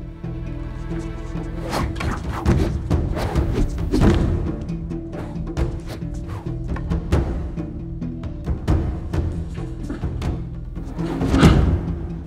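Dramatic orchestral film score with a low sustained drone and timpani drum hits. Over it runs a series of sharp knocks and thuds from a fight with fighting staffs, loudest about four seconds in and again near the end.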